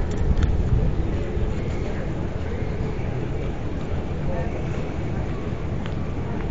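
Steady low rumble of road traffic, with faint voices in the background and a few light clicks just after the start.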